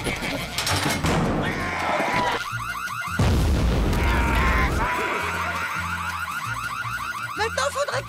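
A rapidly warbling alarm siren over cartoon music, broken about three seconds in by a loud, heavy crash of a wall being smashed through that lasts over a second, with a crowd of voices shouting; the siren continues afterwards.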